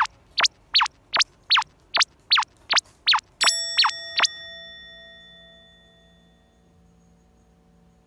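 Cartoon editing sound effect: a quick run of short falling-pitch blips, about two and a half a second, then a bell-like ding about three and a half seconds in that rings out and fades away.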